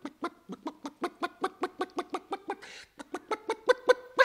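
An actor's voice clucking like a hen in quick, short 'kok-kok' syllables, about six a second. This is a stammer on the first syllable of 'коктейль' (cocktail) turned into hen-clucking. There is a short break about two and a half seconds in, and the clucks grow louder near the end.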